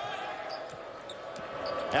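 A basketball being dribbled on a hardwood court, several short bounces over the steady background noise of an arena.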